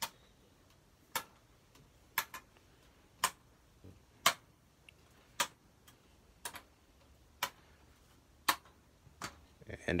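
Sharp clicks of LEGO plastic, about a dozen at roughly one a second, as the hinged hull panels of a LEGO Millennium Falcon are folded shut one after another.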